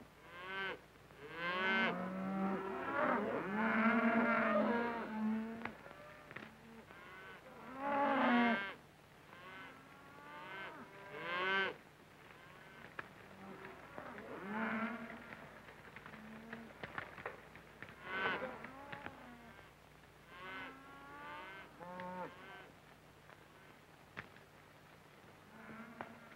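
A herd of cattle mooing, many overlapping calls that come in waves, loudest in the first few seconds and again about eight and eleven seconds in.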